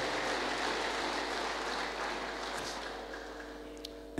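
Congregation clapping, the applause slowly dying away.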